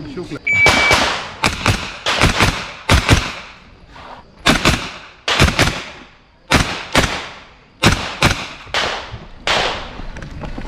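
A shot timer beeps once, briefly, about half a second in. Then a pistol fires a string of shots, mostly in quick pairs with pauses between, each crack trailing a short echo.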